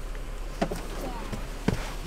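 Low steady hum of a car idling, heard from inside the cabin, with a couple of faint clicks and brief soft voices.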